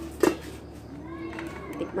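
A single sharp clank of a metal cooking-pot lid being handled, about a quarter second in, followed by faint voices in the background.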